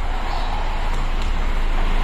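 Steady low rumble of road traffic in the background, slowly growing louder.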